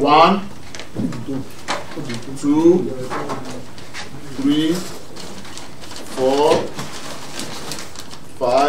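A man's voice calling out one short word about every two seconds as each paper ballot is taken from the box and read, tallying the votes aloud. Faint paper clicks and rustles come between the calls.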